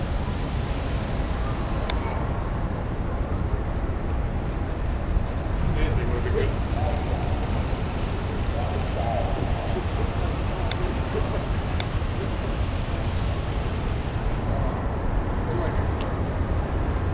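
Steady low rumble of wind on the microphone, with faint distant voices and a few light clicks.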